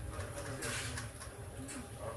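Low steady rumble inside a cruise ship at sea in rough weather, with a short rush of hissing noise a little over half a second in.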